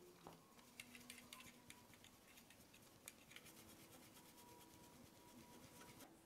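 Very faint, rapid, irregular scratching of a round steel sieve being shaken by hand to sift flour.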